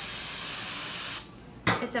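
Aerosol cold spray (skin-cooling spray) hissing from the can onto a toe in one steady burst of about a second and a half, then cutting off suddenly. The spray chills the skin before a numbing injection.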